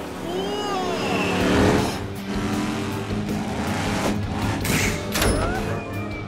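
Cartoon monster truck engine sound effect revving over background music, with two sharp hits about five seconds in.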